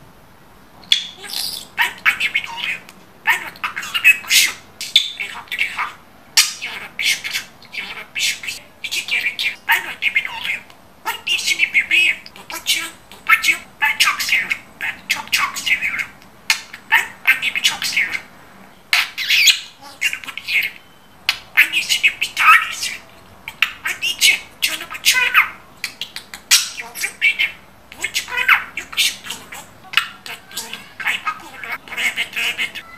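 Budgerigar chattering: quick runs of short chirps, warbles and squawks, broken by brief pauses.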